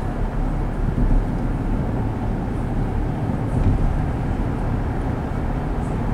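Steady road and tyre noise heard inside a moving car's cabin at highway speed, a low even rumble.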